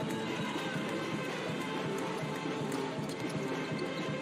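A basketball bouncing on a hardwood court in a run of short knocks, over steady music.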